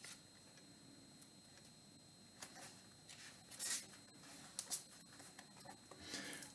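Faint paper rustling, a few brief rustles in the second half: pages of a Bible being leafed through to find a passage.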